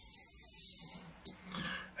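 A man drawing a breath between sentences: a soft hiss lasting about a second, then a brief click and a faint low murmur just before he speaks again.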